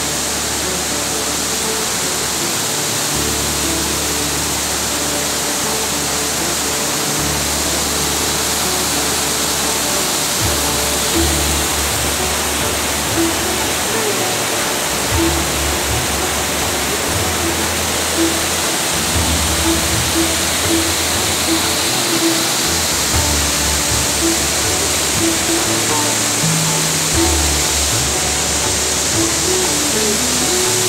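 Steady rush of fast river rapids, with music playing over it: a shifting bass line and short melodic notes that come more often from about a third of the way in.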